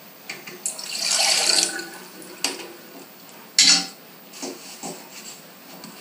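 Water poured into a stainless-steel saucepan for about a second, then a few knocks and clinks of a utensil against the pan, one louder than the rest. The pan is being filled with sugar and water for a pear-poaching syrup.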